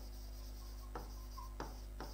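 Chalk writing on a blackboard: faint short scraping strokes, two sharper ones about a second in and a little after one and a half seconds, over a steady low hum.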